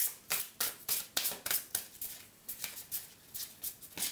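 A deck of tarot cards shuffled by hand: a run of irregular soft slaps and clicks as the cards are pushed from hand to hand, stronger in the first two seconds and lighter after.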